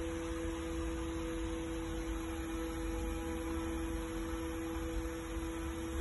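Steady, unbroken electronic warning tone from a school bus dashboard, sounding with the ignition on and the engine off, over a faint low rumble.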